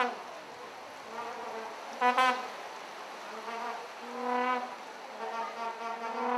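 Vuvuzelas blown in the stands: several overlapping held blasts on one buzzing note, the loudest about two seconds in, over a steady drone from more horns.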